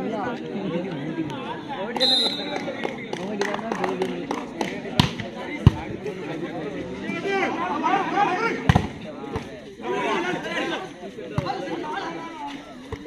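Crowd voices and shouting at an outdoor volleyball match, with a few sharp smacks of the volleyball being hit during a rally. The loudest smack comes about six seconds in, and another comes near nine seconds.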